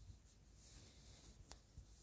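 Near silence: faint background hiss with light rustling and a small click about one and a half seconds in.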